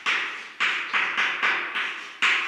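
Chalk tapping and scraping on a blackboard as words are written: a quick run of short, sharp strokes, about three a second.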